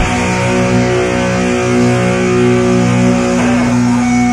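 Live heavy metal band, distorted electric guitars holding long sustained chords, with a change of chord near the end.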